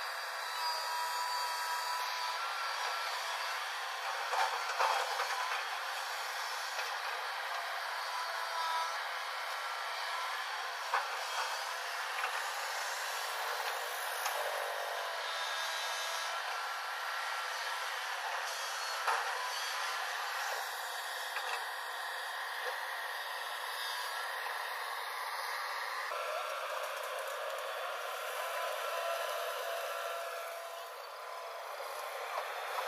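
JCB NXT tracked excavator working: its diesel engine and hydraulics run steadily as it digs in rocky soil, with a few short knocks of the bucket against stone. The sound is thin, with no low end.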